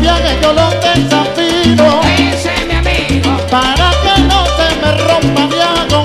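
Live salsa band playing, with a deep upright bass line of held notes changing about every half second under melodic lines from the other instruments.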